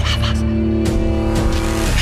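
Hip-hop instrumental beat: a held synth chord over deep bass, with a few short drum hits.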